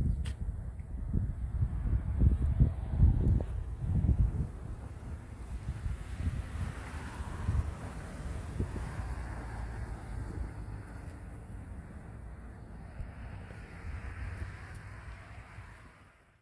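Wind buffeting the phone's microphone in irregular low gusts, strongest in the first four seconds and then easing, over a faint steady outdoor hiss. The sound fades out at the end.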